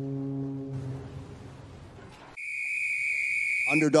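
Commercial sound design: a low, held horn-like tone fades out over the first two seconds. After a short dip, a steady high whistle-like tone with a hiss over it comes in, and a man's voiceover starts over it near the end.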